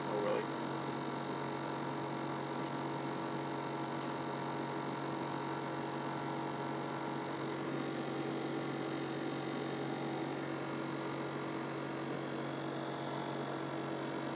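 A steady hum made of several constant tones, holding the same level throughout, with one faint click about four seconds in.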